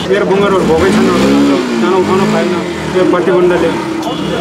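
A motor vehicle's engine rising and falling in pitch twice, as it revs or passes, under people's voices.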